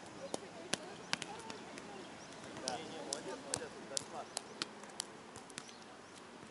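Faint, indistinct distant voices, with about a dozen short, sharp clicks and taps scattered irregularly through.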